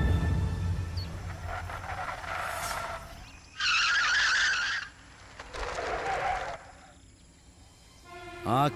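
A car's tyres skidding across loose gravel, a loud scraping skid lasting about a second midway, between softer stretches of tyre and engine noise.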